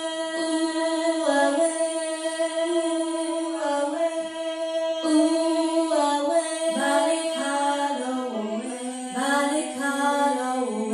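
A woman singing long held notes without words, unaccompanied, moving step by step between pitches in a vocal warm-up exercise.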